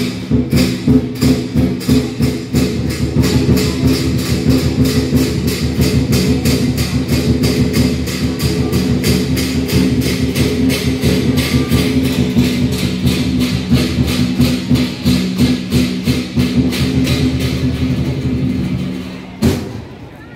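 Vietnamese lion dance percussion: a drum with cymbals beating a fast, even rhythm, which stops abruptly near the end.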